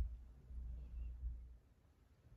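Low, muffled handling thumps and rumble, starting with a bump and dying away after about a second and a half, with no glassy clink.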